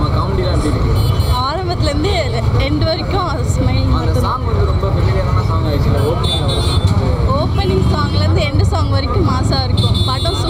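Voices talking over a steady low rumble of road traffic.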